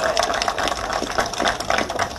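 A small crowd applauding, many hands clapping irregularly.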